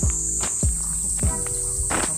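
Steady high-pitched drone of cicadas in the summer trees. Under it runs background music: held low chords and a kick-drum beat.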